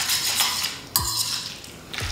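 A metal fork scraping and clinking against a stainless steel frying pan as it stirs fettuccine through a creamy butter-and-parmesan sauce, with sharper clinks at the start and about a second in.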